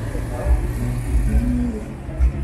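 Street traffic: the low, uneven rumble of passing motor vehicles and scooters, with voices in the background.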